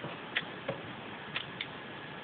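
A few faint, brief clicks over a steady low hiss of room noise.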